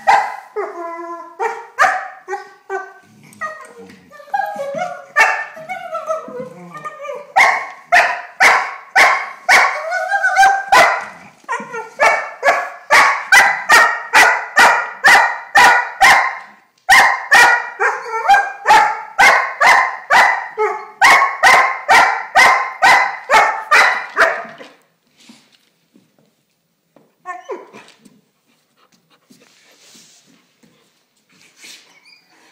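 Irish setter puppy singing: wavering, pitch-bending whines for the first several seconds, then a long run of short, high yips at about two to three a second, with one brief break, before it stops about four-fifths of the way through. One more short whine comes near the end.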